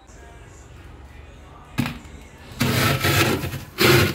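Steel tray of uncooked samosas being put into a freezer: a sharp click about two seconds in, then about a second of rustling and scraping, and another burst of handling noise near the end.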